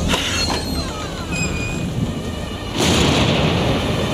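Cartoon storm sound effects: steady rain and wind under faint eerie background music, with a louder burst of storm noise about three seconds in that lasts about a second.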